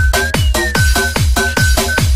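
Pumping (vixa) electronic dance music: a kick drum hitting about twice a second, with short synth stabs between the beats and a high repeated synth note.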